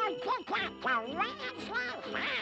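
A cartoon duck voice squawking a rapid run of garbled, quacking syllables that rise and fall in pitch, over orchestral cartoon music.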